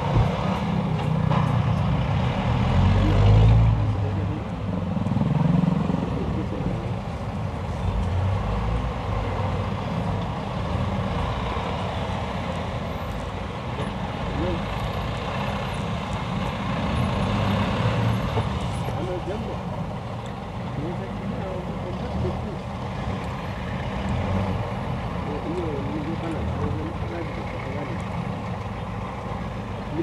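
Slow city traffic heard from inside a car: minibus and car engines running with a steady low rumble.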